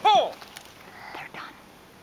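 A short, high-pitched voice right at the start: a single utterance that rises and falls in pitch. It is followed by faint, low murmuring.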